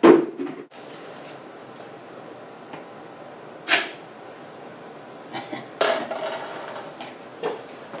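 A loud knock right at the start that dies away within a second. It is followed by one sharp knock about midway and a few quieter knocks and rustles near the end, all in the echo of a large room.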